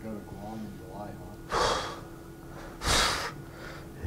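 Faint speech, then two short, sharp breaths through the nose close to the microphone, about a second and a half apart: a man chuckling.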